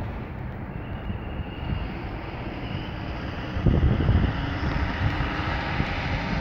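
Steady road and engine rumble of a moving vehicle, heard from inside, with a louder stretch of rumble a little past halfway.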